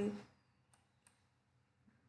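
Two faint computer-mouse clicks in quick succession about a second in, advancing a presentation slide.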